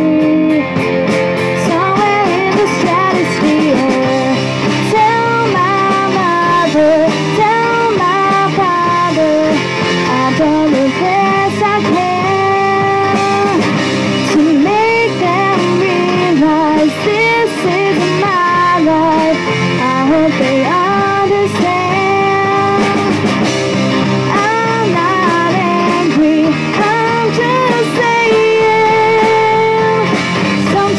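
Live rock band playing amplified electric guitars, bass guitar and drums, with a woman singing lead at a steady, loud level.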